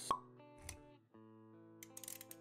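Quiet intro music, sustained notes, with a sharp pop sound effect right at the start and a softer low thump about two-thirds of a second in; the music drops out briefly around the one-second mark and comes back.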